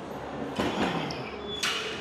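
A plate-loaded leg press worked through the last push of a set: a strained effort from the lifter, then a short, sharp rush of noise about a second and a half in.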